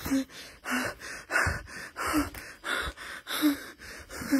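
A man breathing hard and fast, each breath a short gasp with a slight voice to it, about one and a half breaths a second.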